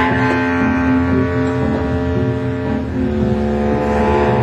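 Free jazz improvisation by two saxophones and double bass: the horns hold long, overlapping, rough-edged notes over a low bass rumble, and the higher line breaks off about three seconds in.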